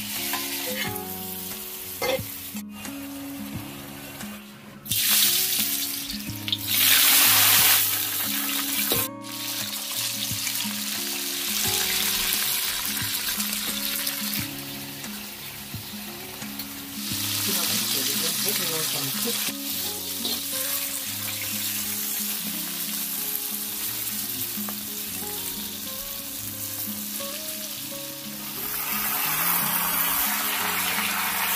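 Beef chunks sizzling in hot oil in a wok as they are stirred with a metal spatula, loudest in bursts a few seconds in and again at about fifteen seconds and near the end, with a curry gravy simmering in between. Two sharp clicks, about three and nine seconds in. Background music with a stepping bass line plays throughout.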